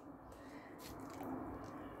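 Lye solution poured from a glass measuring jug over a silicone spatula into a bowl of soap-making oils: a faint, steady trickle of liquid.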